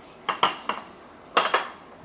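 Metal cutlery clinking against a ceramic bowl and plate: three light clinks in quick succession early on, then one louder clink with a short ring about one and a half seconds in.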